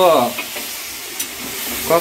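Vegetables frying in a steel kadai with a steady sizzle, while a metal spatula stirs and scrapes through them. There is a single light click about halfway through.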